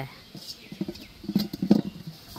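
Hands gripping and lifting an upturned aluminium basin off the ground: a few light taps and soft rustling, no clang.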